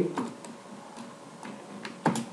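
A few separate keystrokes on a computer keyboard, each a short click.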